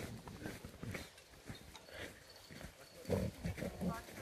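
A golden retriever making short throaty sounds as it rolls and slides on its back over snow, with scraping of the snow beneath it. The loudest run of sounds comes about three seconds in.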